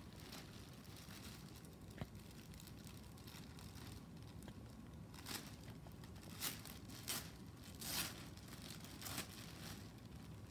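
Clear plastic garment bag crinkling in several short bursts in the second half as a sweater is pulled about inside it, with a small click about two seconds in.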